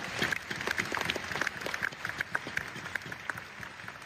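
Arena crowd applauding at the end of a badminton rally. The clapping is dense at first and thins out and fades toward the end.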